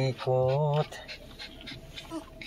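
A man's voice chanting in a sing-song, holding one wavering note for about half a second near the start, then the quieter steady hum inside a car.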